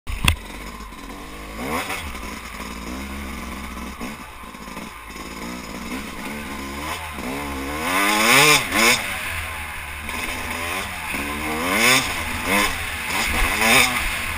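Yamaha YZ250 two-stroke dirt bike engine riding a trail, its pitch rising and falling as the throttle is opened and closed several times. It is loudest about eight seconds in. A sharp click comes right at the start.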